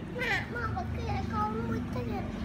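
Children's high-pitched voices talking and calling out, over a low steady hum.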